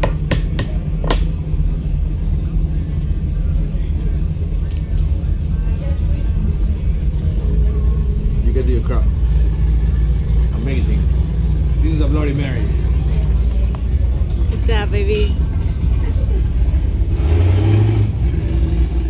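A steady low rumble, with a few sharp clicks near the start and faint voices in the background.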